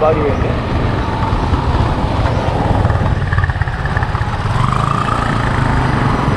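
Wind rumbling over the camera microphone on a moving motor scooter, with the scooter's engine running underneath.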